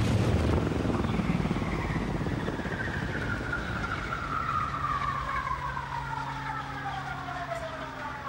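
Convair 440 airliner's piston engines and propellers winding down, a whine falling steadily in pitch over a low steady hum as the level slowly drops.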